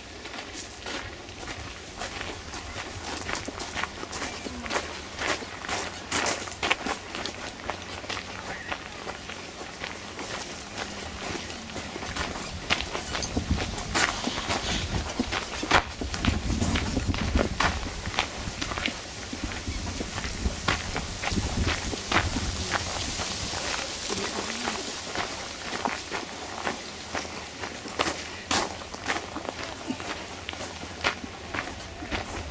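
Footsteps walking on stone paving, a long series of crisp, unevenly spaced steps.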